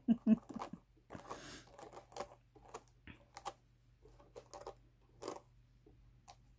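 Fingers picking and plucking Jacob wool on the wire teeth of a hand carder, giving faint, scattered scratchy crackles and rustles. A short laugh trails off at the start.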